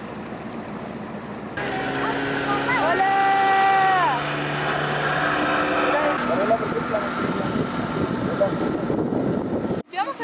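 A motorboat's engine running over wind and water noise as the boat moves across the lake. A long, held vocal call rises over it about three seconds in, and brief voices follow later.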